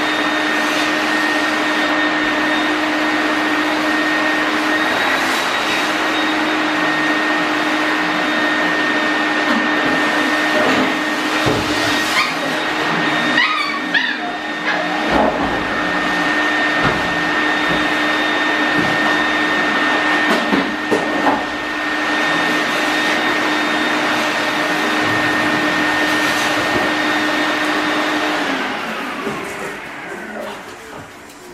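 A loud, steady electric motor drone with a constant whine, which winds down and stops near the end. Puppies whimper and yip briefly about halfway through.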